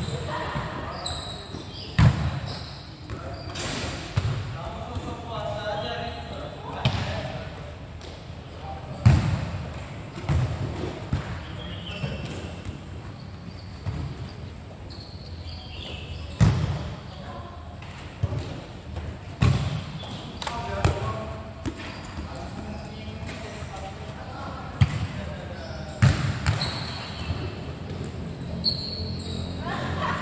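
Futsal ball being kicked and bouncing on a court floor: a dozen or so sharp thuds at irregular intervals, the loudest about two and nine seconds in.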